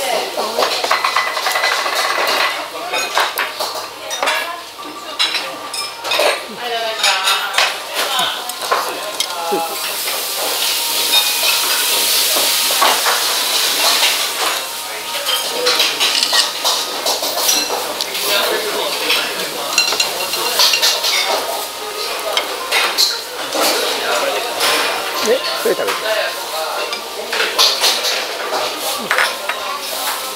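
Restaurant clatter: plates, bowls and cutlery clinking and knocking in many short sharp clicks, with a few seconds of hiss near the middle.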